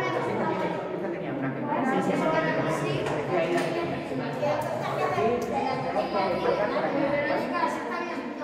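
Children's voices chattering over one another while they work at tables, with a few small knocks and clicks from handling bottles and pens.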